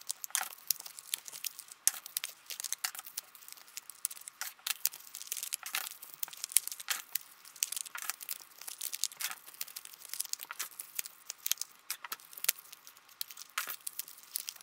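Small cardboard eyeshadow packages being opened and handled: a rapid, irregular run of papery crinkles, tearing and light clicks as the pans are pushed out of their sleeves.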